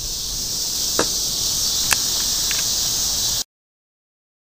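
Steady chorus of crickets, with two sharp clicks about one and two seconds in. The sound cuts off suddenly a little past three seconds, into dead silence.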